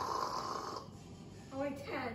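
Stern Star Wars pinball machine's explosion sound effect from its speakers, a rushing noise that fades out over the first second. Near the end comes a brief, wavering voice-like sound.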